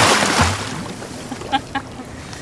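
A released sturgeon splashing hard at the surface as it kicks away beside the boat; the splash is loudest at the start and dies away within about a second, with a couple of faint ticks near the end.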